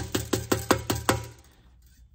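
Rawhide mallet rapidly tapping a thin copper strip held on a metal edge, folding the strip's edge over: an even run of short knocks, about six a second, each with a brief ring, stopping a little over a second in.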